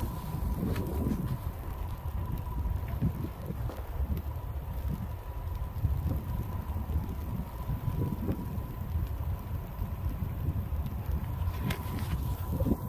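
Wind buffeting the microphone in an uneven low rumble, with a faint steady high tone under it.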